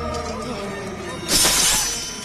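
Film background score, with a loud crash sound effect about a second and a half in that lasts about half a second.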